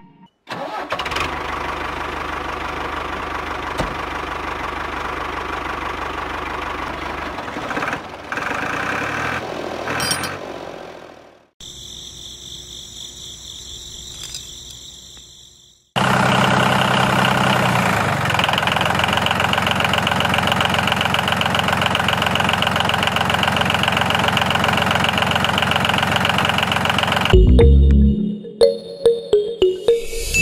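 Tractor-like engine sound running steadily. It drops out abruptly about 11 seconds in, leaving a quieter, higher whine for a few seconds, then returns louder about 16 seconds in.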